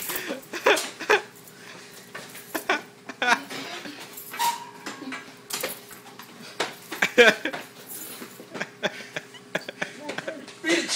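Men grunting and straining in short, irregular vocal bursts during a wrestling scuffle, with knocks and scuffing from bodies and feet.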